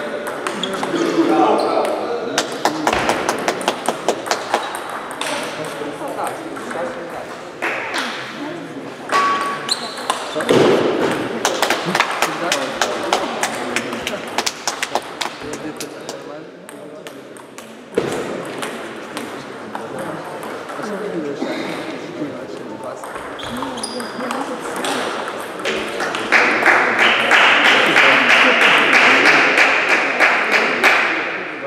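Table tennis balls clicking against bats and tables in a sports hall, many quick sharp ticks with echo, over background voices. A loud, steady rushing noise comes in near the end.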